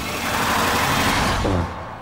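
A loud rushing noise effect from a film trailer's soundtrack, swelling and then fading out after about a second and a half.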